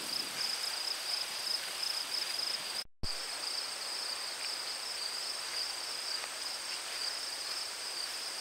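Insects, such as crickets, trilling steadily in a high-pitched, slightly pulsing chorus. The sound drops out for a moment about three seconds in at a cut, then carries on unchanged.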